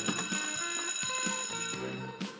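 Electric school bell ringing steadily, stopping near the end, over light background music.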